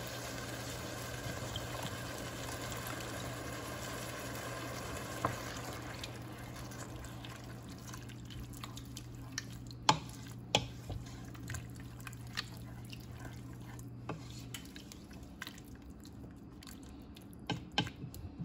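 V8 juice poured from a can into a pot of sizzling tomato and vegetable mix, followed by a wooden spoon stirring the thick mixture, with several sharp knocks of the spoon against the pot's side.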